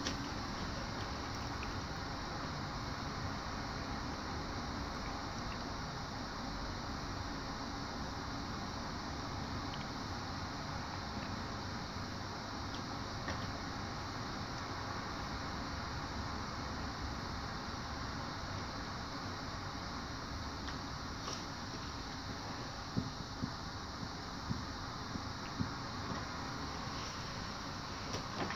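Steady room noise with no clear source, with a few faint clicks in the last few seconds.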